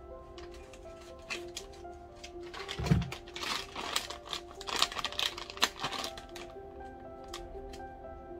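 Croutons poured from a plastic bag into a glass salad bowl: a flurry of small clicks, rattles and bag crinkling, with a thump about three seconds in, from roughly three to six seconds. Background music with a simple melody runs throughout.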